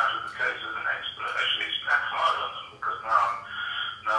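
A person talking through a mobile phone's loudspeaker, the voice thin with its lows and highs cut off.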